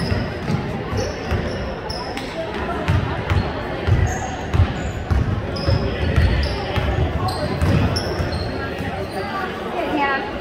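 A basketball bouncing on a hardwood gym floor as it is dribbled, in irregular thumps, with short high squeaks of sneakers on the court and background voices in a large echoing gym.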